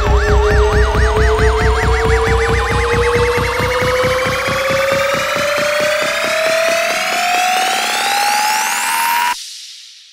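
Psytrance build-up: a steady kick and bass beat under a siren-like synth that wobbles faster and faster while rising sweeps climb in pitch. The beat fades out about three quarters of the way in, and then the whole build cuts off suddenly about a second before the end.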